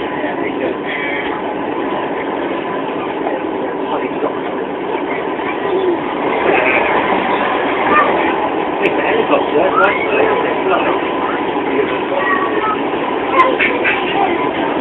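Running noise inside a moving passenger train carriage, with a thin steady tone, under the chatter of passengers, children among them. The noise gets a little louder about halfway through as a freight train passes close alongside.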